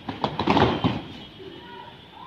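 A cluster of thumps and slaps from many children's bare feet landing on foam floor mats after a jump. It lasts about a second, then eases off.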